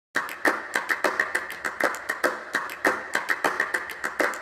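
Percussive intro of a pop backing track: a quick rhythm of sharp taps, several a second, with stronger accents.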